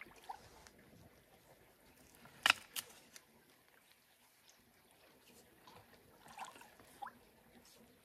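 Faint sloshing and small splashes of shallow water being stirred by a person wading and reaching in with their hands. Two sharp knocks come close together about two and a half seconds in, and there are a few small splashes near the end.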